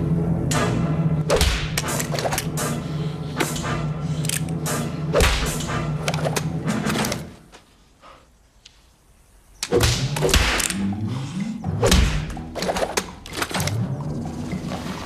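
Movie soundtrack with music holding a steady low note under a run of sharp smacks, the face slaps of a fight scene. It drops to near silence for about two seconds in the middle, then more sharp smacks follow with short vocal or musical sounds.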